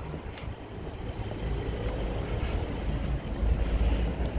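Wind rumbling on the phone's microphone outdoors, growing stronger about halfway through, over a faint steady background hum.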